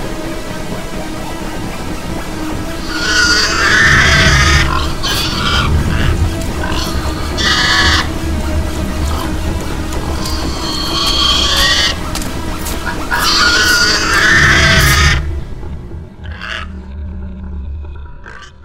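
Horror-film sound design: a loud, low rumbling drone with harsh, shrieking screeches over it in several waves. It cuts off sharply about fifteen seconds in, leaving a fading rumble.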